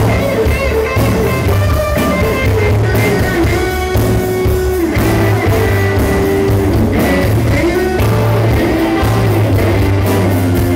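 Live country-rock band playing, with an electric guitar lead of bent, sliding notes over bass and a steady drum beat.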